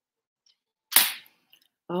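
A small hard object knocking once, sharply, about a second in, followed by a faint tick half a second later, as makeup tools are handled.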